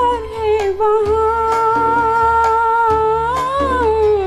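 A woman singing one long, wordless held note over backing music with a bass line and a light beat; the note wavers slightly, bends up briefly near the end and settles again.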